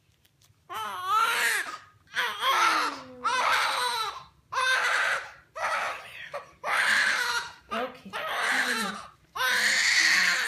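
Newborn baby girl with a cleft palate crying: a string of cries, each about a second long with short breaths between, starting shortly after a quiet first moment.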